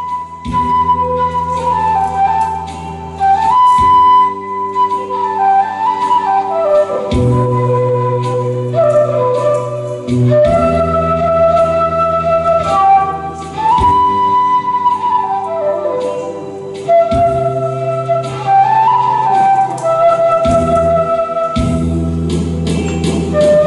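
Transverse bamboo flute playing a slow melody of long held notes and stepping, falling phrases, with short breaths between phrases. Sustained low accompaniment chords sound underneath and change every few seconds.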